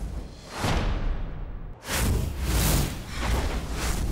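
Broadcast graphics transition sting: a whoosh about half a second in, then a louder run of whooshes from about two seconds in, over a deep bass rumble.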